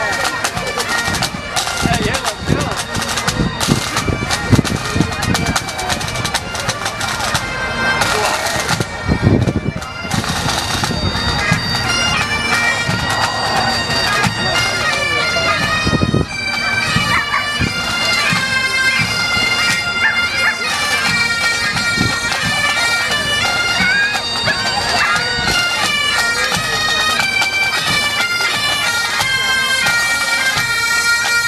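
Pipe band playing: Great Highland bagpipes sounding a melody over their steady drones, with bass, tenor and snare drums beating, the drumming heaviest in the first ten seconds or so.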